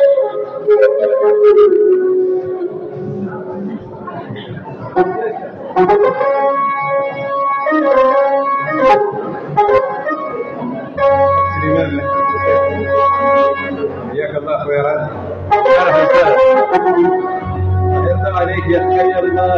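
Electronic Yamaha keyboard playing held notes, starting about six seconds in, with a low bass note joining about five seconds later, over people chattering.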